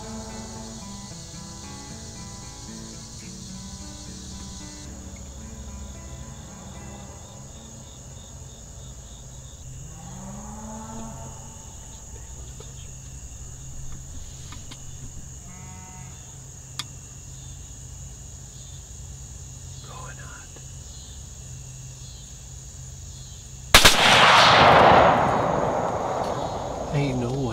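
Steady insect chirring in a quiet field, then a single loud gunshot near the end with a long fading echo: a deer hunter firing at a doe.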